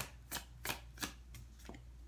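A tarot deck being shuffled by hand, packets of cards dropped from one hand onto the other: a short card slap about three times a second, getting fainter.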